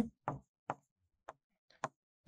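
Four light, short taps of a pen against a writing surface as a word is handwritten.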